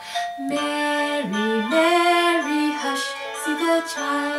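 A woman singing a slow, gentle Christmas song about the Christ child over an instrumental accompaniment, holding long notes.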